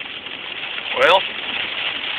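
Steady hiss of heavy rain on a car and its tyres running through water on a flooded road, heard from inside the car.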